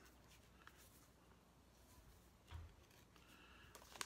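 Near silence: room tone with a few faint handling ticks and one soft low thump about two and a half seconds in.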